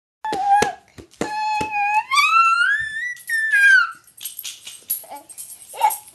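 A toddler singing in a very high voice. He holds a note, then slides it smoothly up and back down, with a few sharp taps at the start.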